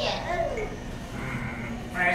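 A puppeteer's voice groaning in character as a puppet with a stomach ache, ending in a drawn-out low moan.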